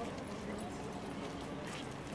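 Footsteps on stone paving, a quick irregular run of clicks, over an indistinct murmur of people talking.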